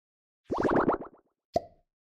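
An edited-in cartoon-style sound effect: a quick run of about eight rising bloops, then a single sharp pop with a brief ringing tone.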